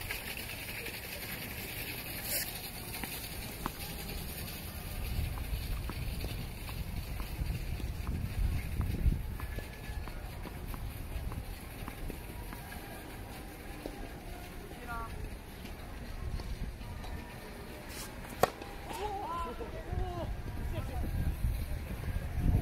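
Open-air tennis court between points: wind buffeting the microphone in gusts, faint distant voices, and one sharp knock late on.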